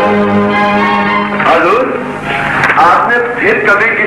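A held, bell-like chord from the film's score rings for about a second and a half and then breaks off. A man's voice speaking takes over.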